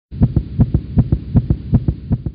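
A rapid low throbbing sound effect, about seven pulses a second, starts suddenly after a brief silence and runs for a little over two seconds before cutting off.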